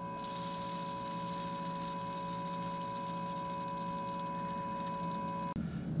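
Electrodynamic shaker driving a small salted square plate at a resonance: a steady high-pitched tone with fainter tones above and below, over a hiss of salt grains bouncing on the vibrating plate. It cuts off suddenly near the end.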